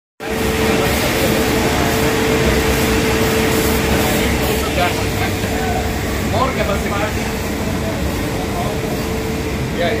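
Men talking in a group outdoors, over a loud, steady rushing noise and a steady hum that stops about three-quarters of the way through.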